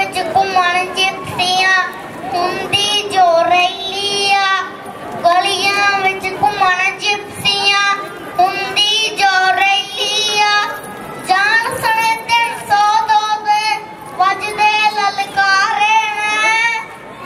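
A young boy singing a song into a handheld microphone, in phrases with short breaths between them.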